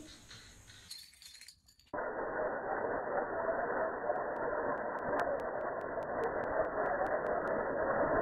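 Metal bottle caps poured onto a glass tabletop: a dense clattering rattle starts about two seconds in, and for several seconds a run of sharp separate clinks rings out over it.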